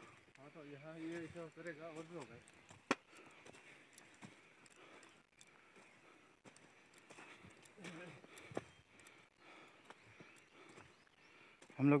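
A man's voice speaks quietly for the first two seconds. After that come faint scuffs and steps over loose rock and mud landslide debris, with one sharp click about three seconds in.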